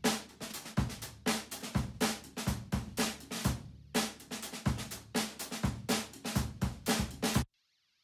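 Drum kit playing a steady groove, picked up by room microphones (Coles 4038 ribbon mics) in a fairly dry, sound-treated room, with no processing on them. The playback cuts off suddenly about half a second before the end.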